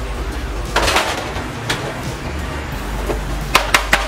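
Baked cookies being set down one by one on a metal baking sheet: a few light clicks and taps, several close together near the end, over a steady background hiss and hum.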